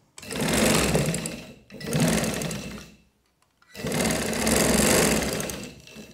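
Domestic sewing machine stitching fabric in two runs of a few seconds each, with a short stop about three seconds in.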